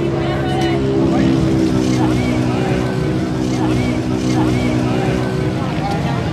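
Dirt bike engines running at a steady pitch, their note dipping slightly about a second in, with a voice talking over them.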